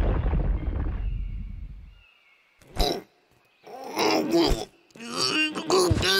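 The rumble of a cartoon rock slide dying away over the first two seconds. A man then groans and grunts in short bursts.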